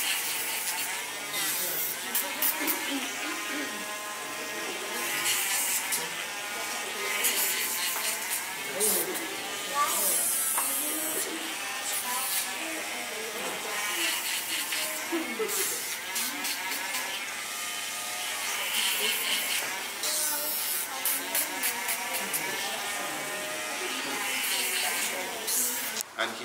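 Small cordless rotary grinding tool running as it files down and reshapes a falcon's overgrown talons, with people talking in the room.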